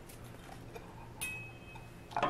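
Quiet kitchen room tone with a faint low hum, then a single light clink of a dish about a second in that rings briefly.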